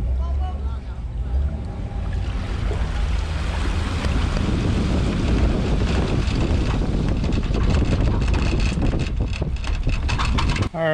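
Steady low engine rumble with wind buffeting the microphone, and water churning and splashing around the boat trailer as it is pulled up the launch ramp, with more splashing from about six seconds in.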